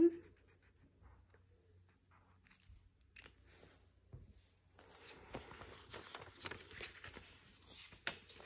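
Faint strokes of a marker colouring in a box on a paper challenge sheet, then from about five seconds in a louder, steady rustle of paper prop-money bills being handled.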